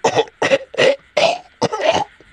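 A man coughing repeatedly in a hacking fit, about six harsh coughs in quick succession.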